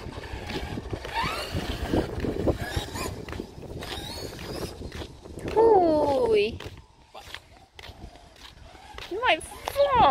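Radio-controlled monster truck's motor whining as it drives, with a loud falling glide in pitch about halfway through and shorter rising and falling swoops near the end, over wind rumble on the microphone.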